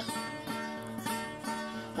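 Instrumental passage of a sung tango with no voice: steady held chords between two vocal lines.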